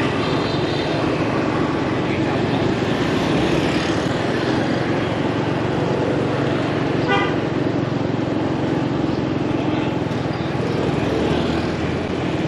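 Steady engine and road noise of a motorbike riding through city street traffic, with a short horn beep about seven seconds in.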